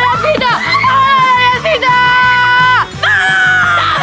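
Girls shouting in two long, high, held cries of triumph, over background music.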